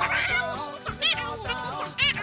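Background music with a high, meow-like cry that rises and falls in pitch about a second in and again at the end.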